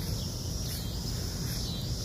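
Steady high-pitched chorus of insects, such as crickets, in the garden, with a low rumble underneath.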